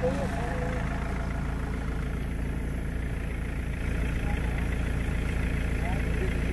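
A motor vehicle's engine idling steadily, with a low, even hum.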